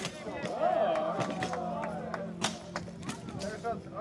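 Spectators chatting, cut through by several sharp clashes that fit the blows of one-handed swords on armour in a tournament bout.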